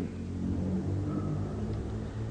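Low, steady background hum and rumble in a pause between speech, with a faint thin tone about halfway through.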